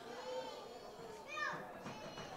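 Faint, distant shouts of footballers calling to each other on the pitch, with one higher call about one and a half seconds in.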